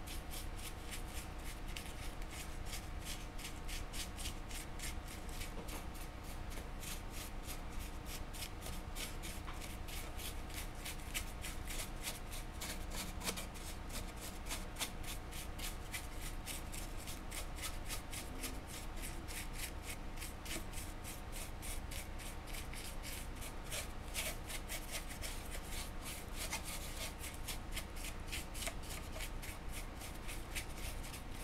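Small paintbrush scratching and dabbing paint onto a sculpted tree model's rough base: a quick, uneven run of short bristle strokes close to the microphone, over a faint steady hum.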